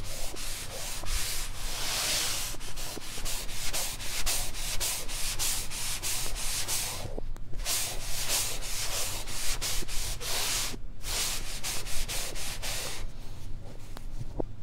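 A fabric eraser rubbing chalk off a blackboard in quick back-and-forth strokes, played in reverse. The rubbing stops briefly twice, about seven and eleven seconds in.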